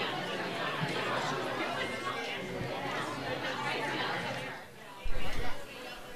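Crowd chatter in a large hall: many people talking at once, no single voice standing out, fading about four and a half seconds in. About five seconds in there is a brief low thump.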